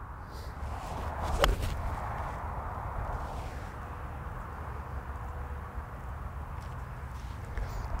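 A golf iron strikes the ball once, a single sharp click about one and a half seconds in. Steady outdoor background hiss follows.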